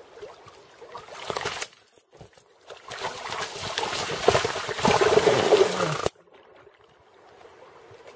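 Water splashing and churning: a short burst, then a louder, longer one from about three to six seconds in that cuts off abruptly.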